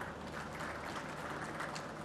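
Steady applause from a crowd clapping.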